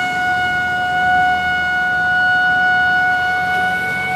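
A trumpet blown in one long held note, steady in pitch, as a call to war.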